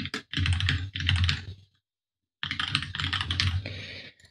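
Typing on a computer keyboard: two runs of quick keystrokes with a short pause between them, entering a password and an email address.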